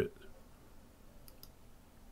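Two faint computer mouse clicks in quick succession a little past halfway, against quiet room tone.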